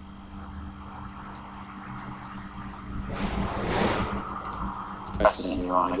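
Faint steady hum, then a couple of computer mouse clicks, and a film soundtrack starting to play through the media player: a swell of sound about three seconds in, then voices near the end.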